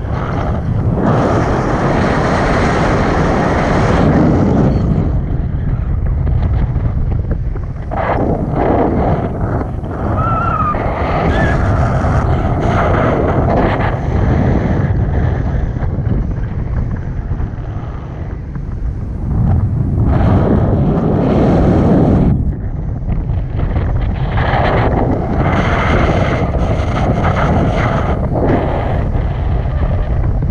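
Wind rushing and buffeting over a handheld camera's microphone in tandem paraglider flight. It is loud throughout and swells and eases in gusts.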